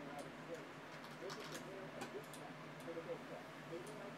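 A few faint, scattered computer keyboard and mouse clicks over a low murmur of voices in the room.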